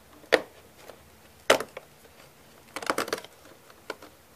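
Perforated cardboard door of an advent calendar box being pressed in and torn open: a few sharp snaps, then a short run of crackling about three seconds in.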